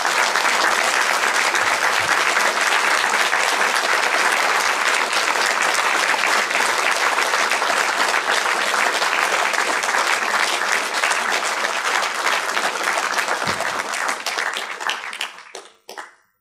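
Audience applauding in a steady round that holds for about fifteen seconds, then dies away near the end.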